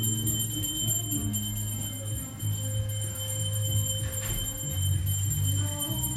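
Devotional kirtan music: low held notes that change every second or so, under a continuous high metallic ringing from a rapidly rung bell.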